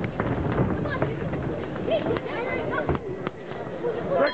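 Voices of spectators and corner men calling out over a busy hall background, with a few sharp knocks.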